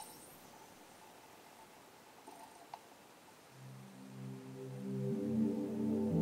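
A few faint clicks as the Yorx CD Pal spins up the disc. About three and a half seconds in, music from the CD begins quietly and swells: sustained, ambient-sounding chords.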